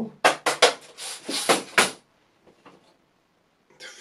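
A quick run of sharp clicks and rattles from small hard objects handled on the fly-tying bench, as an extra-small metallic green cone head is picked out; it stops about two seconds in.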